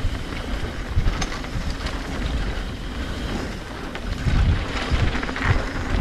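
Hardtail mountain bike ridden fast down a packed-dirt trail, heard from a camera on the bike or rider: a deep, uneven rumble of tyres and wind on the microphone, with low thumps over bumps and occasional sharp clicks and rattles from the frame and chain, getting louder after about four seconds.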